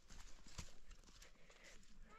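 A few faint, scattered knocks from a wooden log roller being rolled over a packed-earth roof, the loudest just over half a second in. The roller is tamping the mud roof so rain cannot get into the house.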